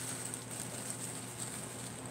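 Quiet room tone: a steady faint high hiss and low hum, with a few soft small ticks.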